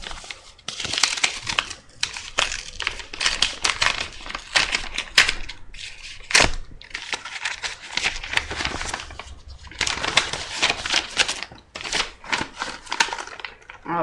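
Paper mail envelope being handled and opened by hand: rustling and crinkling paper with many sharp crackles and a few brief pauses.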